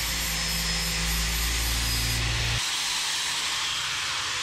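Angle grinder grinding the tops of a set of clamped steel pieces to even up one that is a little crooked: a steady hiss of the disc on metal. About two and a half seconds in, the lower hum drops away and the grinder runs on more lightly.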